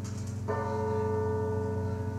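A bell-like tone struck about half a second in and ringing on steadily, over a constant low electric hum.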